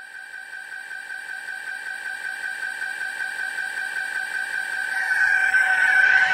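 Electronic dance music played backwards: a high held synth tone, with a fainter lower tone and a faint quick flutter beneath, swelling steadily louder. This is the track's ending fade-out run in reverse.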